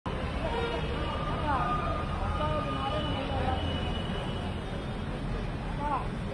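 Street ambience: a steady low rumble of road traffic, with indistinct voices in the background.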